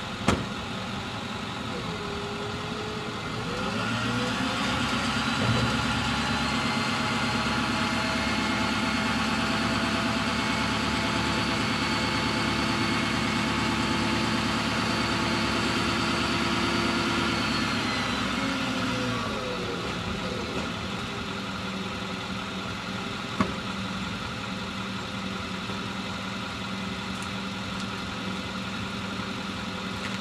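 Hook-lift truck engine idling; a few seconds in it speeds up with a steady whine as the hydraulic arm lowers the mini bin to the ground, then drops back to idle around two-thirds of the way through. Two sharp clicks, one at the very start and one after the engine settles.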